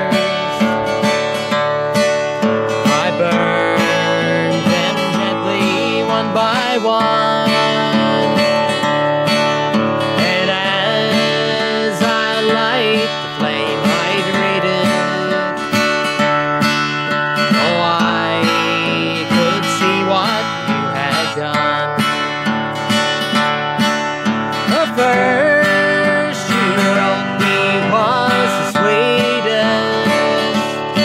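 A man singing a country song while strumming a steel-string acoustic guitar in a steady rhythm.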